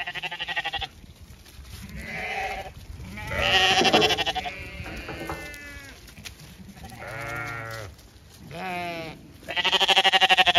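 Zwartbles sheep bleating repeatedly, several quavering calls one after another and sometimes overlapping. The loudest comes about four seconds in, and another loud one starts near the end.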